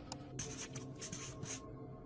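Marker-pen writing sound effect: a quick run of short scratchy strokes from about half a second to a second and a half in, over soft background music.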